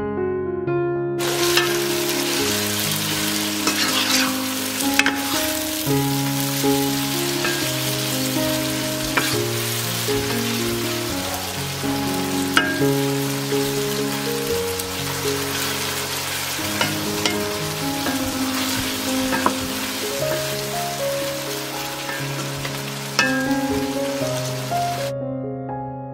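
Okra, tomatoes and onions sizzling in oil in a nonstick frying pan, the sizzle starting about a second in, with scattered clicks and scrapes of a wooden spoon stirring the vegetables. Soft piano music plays underneath.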